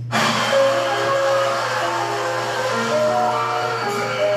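Instrumental backing track starting abruptly, a melody of held notes stepping up and down in pitch.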